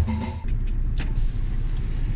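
Background music with percussion ends about half a second in, giving way to a car's steady low engine and road rumble heard inside the cabin, with a single click about a second in.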